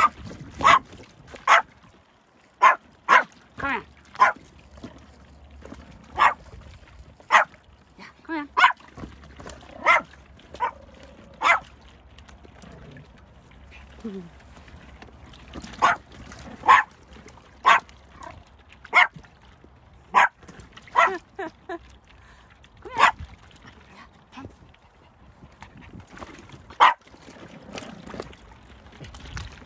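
Pomeranian puppy barking: short, sharp single barks in irregular runs, about twenty in all, with a pause of a few seconds partway through.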